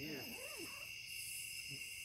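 Steady chorus of night insects, crickets among them: several high, unbroken tones held together, with a faint voice trailing off in the first half second.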